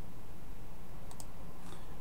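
Steady low background hum with two faint clicks close together a little over a second in, and a fainter click shortly after, of the kind a computer mouse or keyboard makes.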